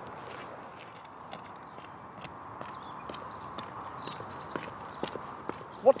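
Footsteps on a gravel path, a little over two steps a second, over a steady outdoor background hiss.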